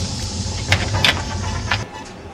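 Soda poured from a plastic bottle into a sink: steady splashing and fizzing with a few sharper glugs, cutting off shortly before the end.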